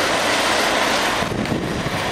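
Steady hiss and roar of ocean surf breaking along the beach, easing slightly a little over a second in.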